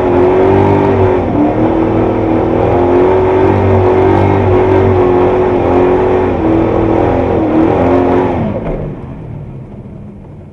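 Triumph TR7 V8's engine heard from inside the car, running loud and steady at raised revs as the car rolls forward slowly, its pitch dipping briefly a few times. About eight and a half seconds in the revs fall away and it drops much quieter as the car comes to a stop.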